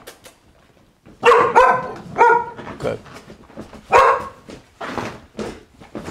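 Dog barking repeatedly. A quick run of sharp barks starts about a second in, with a loud one near the middle.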